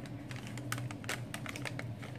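Irregular light clicks of typing on a keyboard, several a second, over a low steady hum.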